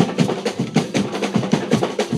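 Carnival marching drum band playing a fast, steady rhythm, with sticks on snare drums and mallets on large drums.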